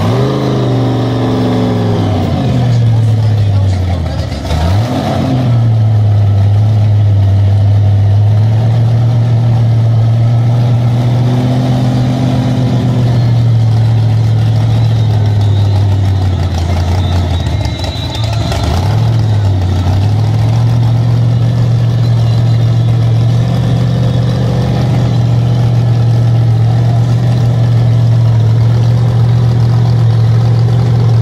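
Supercharged V8 of a 1400 hp Chevy Camaro drag car running loudly at a steady idle. At the start the revs fall back from a blip, and twice, a few seconds in and again past halfway, the revs dip briefly and pick back up.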